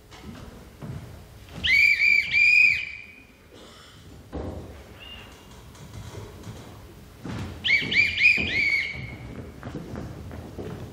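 A bosun's whistle blown in short shrill blasts, each rising then falling in pitch: two about two seconds in, then four more in quick succession near the end. Between them come dull thuds of footsteps on wooden stage stairs.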